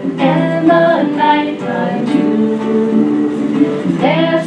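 A woman singing a song into a microphone, accompanied by a ukulele.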